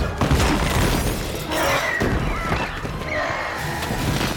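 Film action sound mix: repeated crashing impacts and shattering debris over score music.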